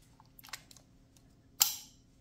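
Plastic US plug fitting being pressed onto a universal USB-C wall power adapter: a few faint plastic clicks, then one loud click about one and a half seconds in as the fitting locks into place.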